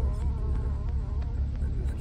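Inside a 2000 GMC Sierra pickup's cab at a slow crawl along a dirt trail: the steady low rumble of the engine and tyres, with a thin wavering buzz over it.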